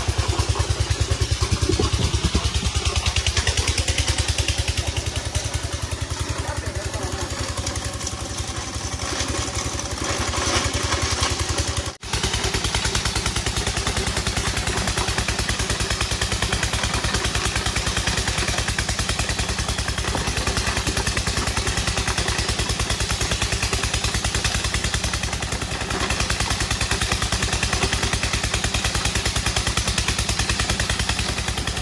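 Engine-driven stone-grinding machine running steadily with a fast, even beat and some clatter. The sound drops out for an instant about twelve seconds in.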